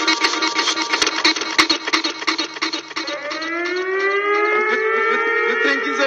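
A dancehall riddim with sharp percussion hits playing, then about halfway through a siren effect comes in over the mix, slowly rising in pitch and then holding.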